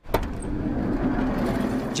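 A passenger van's sliding side door unlatches with a sharp click just after the start and opens, with the van's engine running steadily underneath.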